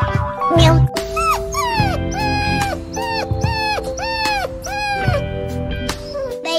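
A puppy whining: a string of about six or seven short, high whimpers, each rising and then falling in pitch, over background music.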